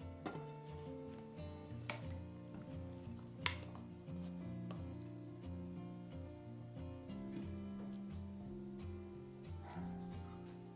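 Background music with a steady beat. A plate knocks against an aluminium pudding pan with a faint click about two seconds in and a sharper clink about three and a half seconds in.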